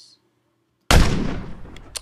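A stock gunshot sound effect from the Action Essentials library played back: one heavy, deep blast about a second in that dies away over about a second, then a short sharp crack near the end, cut off abruptly.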